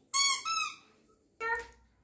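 A toddler's high-pitched squeals: two quick squeaky cries right at the start, then a lower, shorter one about a second and a half in.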